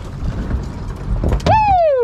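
Knocks and thumps as a gaffed Spanish mackerel is hauled over the gunwale onto a boat deck, then about one and a half seconds in a man lets out a long, loud 'woo!' whoop that falls in pitch.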